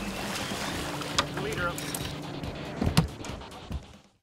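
Water splashing and churning as a hooked bluefin tuna thrashes at the surface alongside a boat, over the boat engine's steady hum. There is a sharp thump about three seconds in, and the sound fades out at the end.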